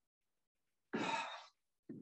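A man's audible sigh: one breathy exhale about a second in, lasting about half a second.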